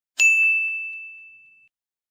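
A single bright ding, a bell-like chime struck once and fading away over about a second and a half: an outro sound effect.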